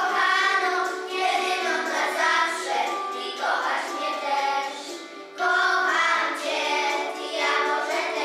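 A group of young children singing a song together in unison. Their singing drops away briefly about five seconds in, then resumes.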